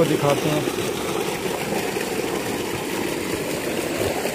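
Solar-powered tube well's electric motor and centrifugal pump running at a steady, even level.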